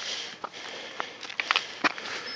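Rustling of fabric against the microphone with several sharp, irregular clicks: handling noise from a handheld camera brushing a jacket.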